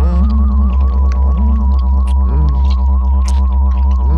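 Eerie electronic sound-design drone: a loud, deep hum under a high, wavering tone held steady, with short sliding groan-like tones rising and falling over it about once a second and faint scattered clicks.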